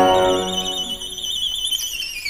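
Solo violin, after a rising run, holds a very high note with quick, even vibrato, then begins to slide back down near the end. A chord in the accompaniment sounds under the start of the note and dies away.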